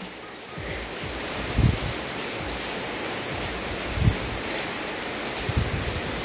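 Ghee sizzling with a steady hiss as it melts in a hot kadai. A few soft low thumps come through the hiss.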